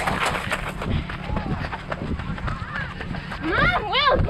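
A girl running, her footsteps and movement heard with wind buffeting the body-worn microphone. Near the end she lets out two short high-pitched cries.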